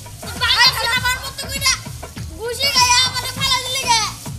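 Boys' high-pitched cries and shouts, not words, during a scuffle, over background music.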